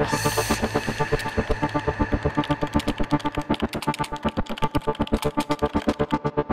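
Electronic news-intro music with a fast, even pulsing beat over sustained synth tones, opening with a short whoosh as the logo appears.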